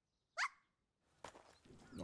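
A single short, high yip rising quickly in pitch: a small cartoon dog's cry from the anime soundtrack, faint, with a few soft clicks after it.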